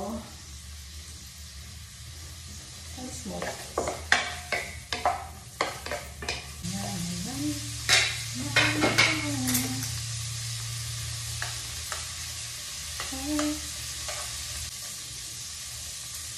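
Small shrimp sizzling steadily in hot oil in a pan, stirred with a spatula in bursts of scraping and tapping strokes against the pan, about three seconds in and again around eight seconds.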